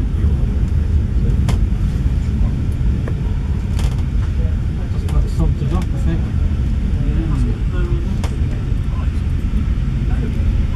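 Steady low rumble of a moving railway carriage heard from inside, its wheels running on the track, with a few sharp clicks scattered through it.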